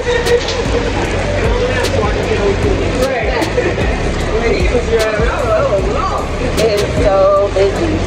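Voices and crowd chatter over a steady low rumble of vehicle traffic, with scattered sharp clicks.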